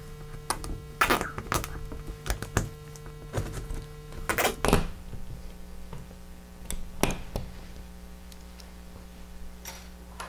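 Strap toggle drywall anchors being set by hand in pilot holes in drywall: their plastic plugs are pushed and clicked down the straps against the wall, giving irregular sharp plastic clicks and knocks, the loudest about a second in and around four and a half seconds in. A faint steady hum runs underneath.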